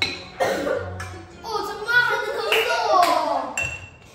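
Children's excited voices and laughter, with a sharp click at the start.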